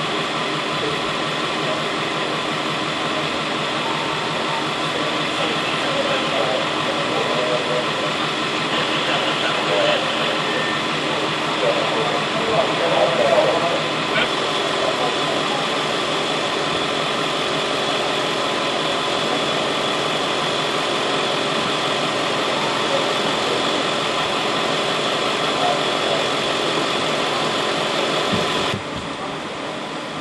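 An ambulance's engine idling steadily at close range, an even hum, with indistinct voices talking faintly in the middle. Near the end the hum drops abruptly to a quieter steady drone.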